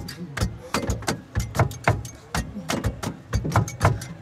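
An irregular run of sharp clicks and taps, several a second, each with a dull knock underneath.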